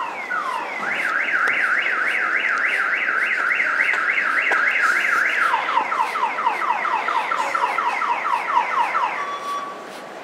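A car alarm sounding loud, cycling through its electronic siren patterns. It goes from falling sweeps to a fast rising-and-falling warble, then to rapid falling sweeps, and cuts off about nine seconds in, leaving a brief steady tone.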